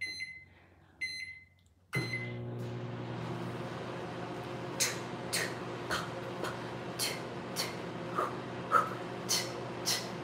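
Two short electronic beeps from a microwave oven's keypad, then the microwave starts and runs with a steady hum. Several brief hissing sounds come over the hum in the second half.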